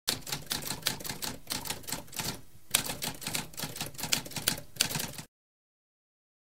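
Typewriter typing: a rapid run of key strikes, with a short break about two and a half seconds in, that cuts off suddenly near the end.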